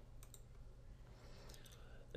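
Near silence with a low steady hum, broken by a few faint computer mouse clicks: a pair about a quarter second in and a few more about a second and a half in.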